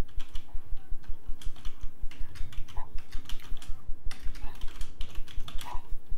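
Typing on a computer keyboard: a run of key clicks as a sentence is typed out.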